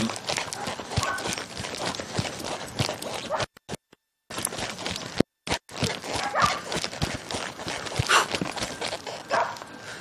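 A horse's hoofbeats on a soft dirt arena as it is ridden at a trot, a string of short dull thuds. The sound cuts out completely twice for a moment partway through.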